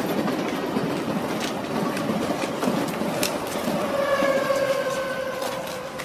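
A train passing, a steady rumble with a few sharp clicks and a drawn-out whine over the last couple of seconds.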